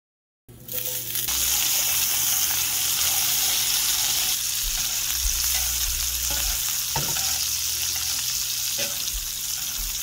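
Filet mignon steaks sizzling in hot fat with garlic in a cast iron pan while a spoon bastes them. The steady sizzle starts about half a second in, with a light click or two along the way.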